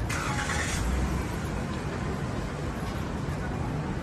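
Outdoor city street noise: a steady low rumble, with a brief hiss in the first second.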